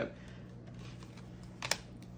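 Cards being handled, with one light tap about 1.7 seconds in as the tarot cards are set down on the table, over a low steady hum.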